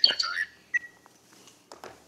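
The end of a spoken 'thank you', then a brief high beep-like tone lasting about a quarter second, followed by a few faint clicks.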